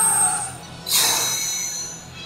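Anime soundtrack audio: background music with a sudden sound effect about a second in, a hissing burst with high ringing tones that fades away over about a second.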